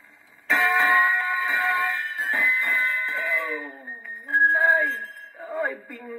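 A 78 rpm shellac record playing acoustically on a Decca 66A portable wind-up gramophone. After a brief pause, a loud passage of voices and music from the record starts about half a second in: first held notes, then sliding vocal sounds.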